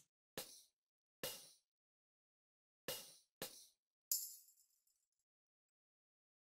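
Tambourine one-shot samples previewed one after another: five faint, short hits at uneven spacing. The last one is brighter, with a metallic jingle that rings for about a second.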